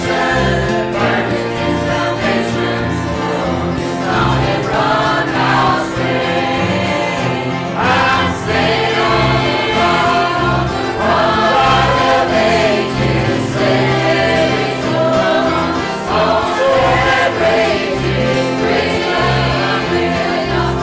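Church choir singing a hymn in parts, accompanied by piano, bass guitar and acoustic guitar.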